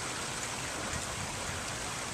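Steady splashing and rushing of water from a small rock waterfall in a garden pond.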